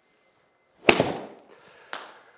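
A golf wedge striking a ball off a hitting mat: one sharp crack about a second in, ringing away briefly, then a fainter knock just under a second later.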